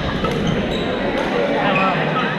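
Badminton play in a large, echoing gym hall: sharp racket strikes on shuttlecocks, one clear strike about a second in, over the mixed voices of players on the surrounding courts.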